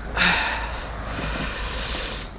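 Steel rear axle of a small quad sliding and scraping sideways through its axle carrier as it is pulled out by hand: a steady rasping scrape lasting about two seconds.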